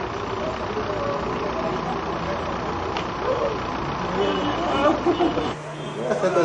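Street traffic noise, with a vehicle engine running, and faint voices calling in the distance.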